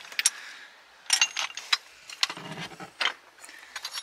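Ceramic salt and pepper shakers clinking and knocking against each other as a hand rummages through a box of them, in a scatter of irregular light clicks.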